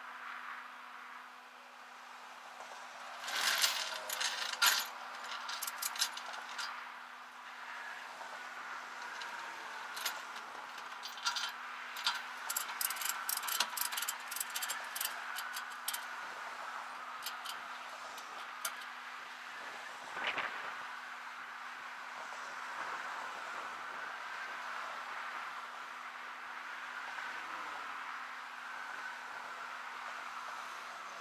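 Light metallic clinking and rattling on and off through the first two-thirds, over the steady noise of highway traffic, with one vehicle passing close about twenty seconds in.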